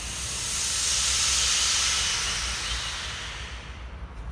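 A hiss that swells and then fades away over about three seconds.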